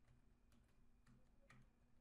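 Near silence with a few faint, scattered computer keyboard key clicks.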